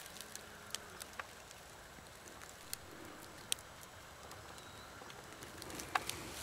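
Quiet outdoor ambience in a woodland clearing: a faint steady background with a few scattered sharp ticks, the loudest about three and a half seconds in, and a faint short high chirp near the end.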